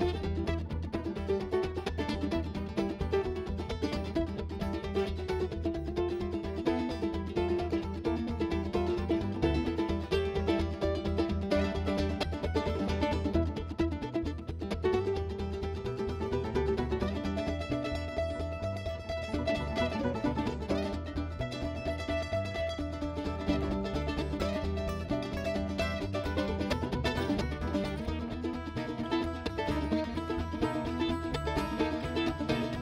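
Live bluegrass band playing an instrumental passage: an F-style mandolin picks the lead over upright bass and a steady beat.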